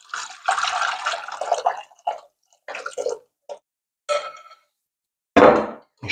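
Thick chocolate mixture pouring from a glass bowl into a steel saucepan of milk, scraped out with a silicone spatula. The wet pour runs over the first two seconds, followed by scattered short scrapes and splats. A short louder knock comes near the end.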